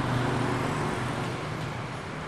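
Motor traffic on the street outside, a steady engine hum and road noise that swells slightly at first and then eases off.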